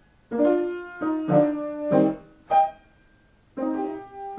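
Piano chords struck one after another with short gaps, each ringing and dying away. About a second of near silence falls just before the end, then playing resumes.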